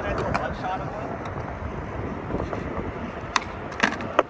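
Skateboard wheels rolling on smooth concrete, a steady rumble, with a couple of sharp clacks near the end as the board's tail is popped and lands in a switch pop shove-it attempt.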